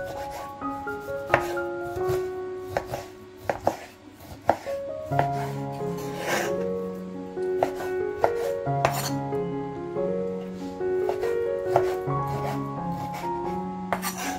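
A chef's knife cutting raw beef into cubes, the blade knocking again and again on a wooden cutting board. This plays over background music, whose bass line comes in about five seconds in.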